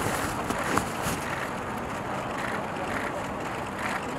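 Steady outdoor hiss of a wet, rainy street with faint voices underneath, and a single sharp click about three-quarters of a second in.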